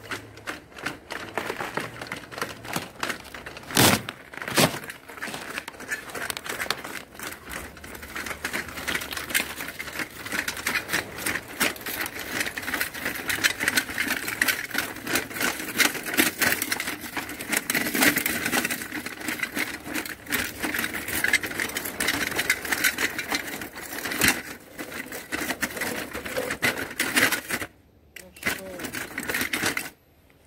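Homemade tracked robot driving on ice: its electric drive motors whine steadily under a fast, continuous clatter of the track links, with a few sharper knocks as it meets obstacles. It pushes against movable obstacles with its tracks slipping, and cuts out briefly near the end.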